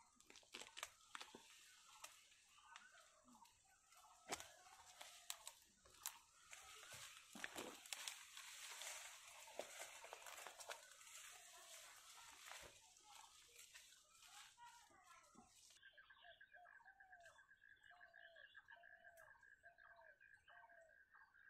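Faint rustling of leaves and snapping of twigs as a person climbs through the branches of a kafal (box myrtle) tree, with short bird calls repeating. In the last few seconds a fast, steady trill sets in, with calls coming about once a second.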